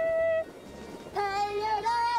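Female voices singing long held notes over music, with a short break about half a second in before the singing resumes.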